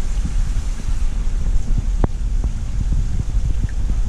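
Loud low rumble of wind or handling noise on the microphone, with a few small splashes and knocks from two young white sturgeon thrashing in shallow water in a plastic tub. The fish are agitated, a sign of stress from ammonia in their shipping water.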